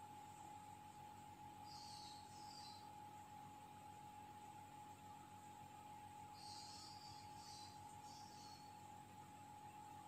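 Near silence: room tone with a faint steady high-pitched whine and a few brief faint hisses.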